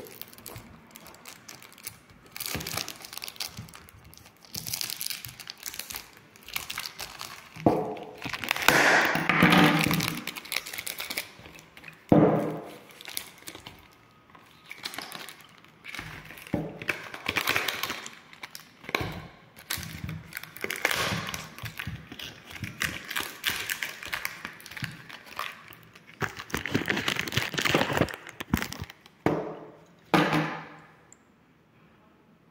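Cellophane wrap being slit with a knife and stripped off a small cardboard perfume box, crinkling and crackling in irregular bursts, loudest about a third of the way in.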